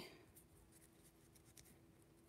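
Near silence: room tone with a few faint light clicks and a faint steady hum.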